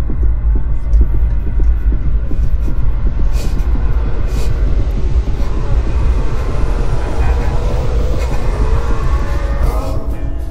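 Zombies pounding on the car's body, heard from inside as a dense, irregular drumming over a low rumble, like rain on a tin roof. Music with singing fades in near the end.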